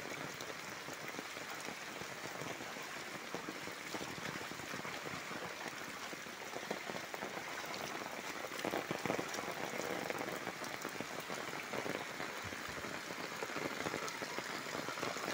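Steady rain falling on standing floodwater and a wet paved lane.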